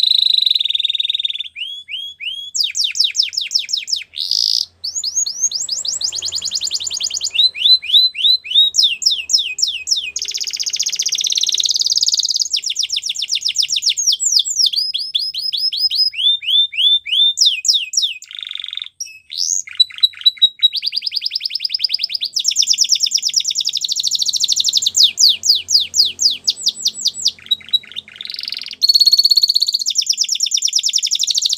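A canary singing a long, nearly continuous song made of rapid trills: each phrase is a fast run of the same note repeated, then it switches to another pitch. There are short breaks about four and a half seconds in and again near nineteen seconds.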